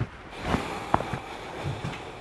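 A few faint, short knocks and taps over quiet room tone, with one brief squeak about a second in.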